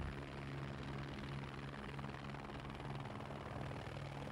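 Helicopter in flight, a steady low hum with a faint fast flutter.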